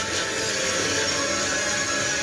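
Film trailer soundtrack: a dense, steady rumble of cinematic sound effects with music underneath.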